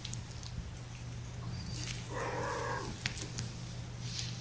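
A young kitten gives one short mew about two seconds in, over a steady low hum and a few faint clicks.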